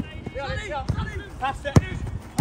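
A football kicked once: a sharp thud about three-quarters of the way through, the loudest sound here. Players shout on the pitch before it.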